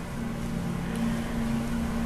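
A steady low hum with faint hiss: room background noise.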